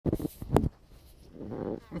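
A few knocks and bumps in the first half-second, then a short low honeybee buzz a little over a second in.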